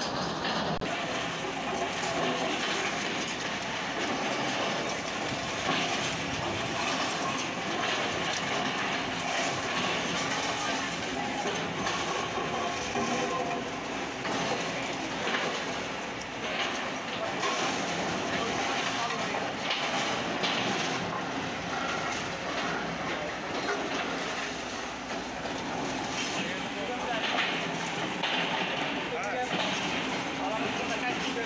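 Long-reach hydraulic excavators running while brick walls and rubble are broken down, with continual clattering and crumbling of falling masonry over the steady engine noise. Voices can be heard in the background.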